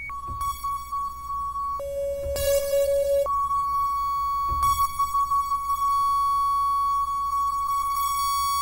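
Waldorf Blofeld synthesizer sustaining one tone with a fluttering, grainy edge. It drops an octave right at the start, drops another octave about two seconds in, jumps back up an octave about a second later, and holds there.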